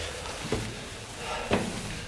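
Footsteps climbing stone steps: two faint thumps about a second apart over a low rustle of movement.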